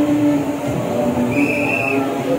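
A steady, loud background din with several held low tones, and one short high whistle-like tone about one and a half seconds in.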